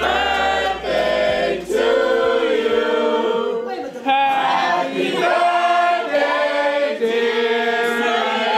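A group of voices singing together in harmony, with long held notes.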